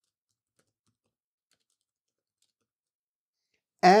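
Near silence broken by a few very faint clicks, typical of keystrokes on a computer keyboard. A man's voice starts right at the end.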